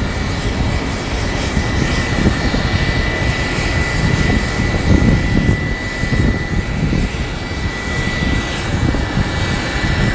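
Jet airliner taxiing at idle power: a steady high engine whine over a low, uneven rumble.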